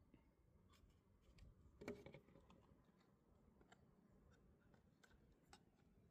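Near silence, with a few faint clicks and one soft knock about two seconds in.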